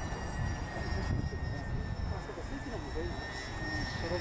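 A twin-engine Cessna 310 passing overhead, its engines giving a steady drone with a high whine, with faint voices talking in the middle and a low rumble underneath.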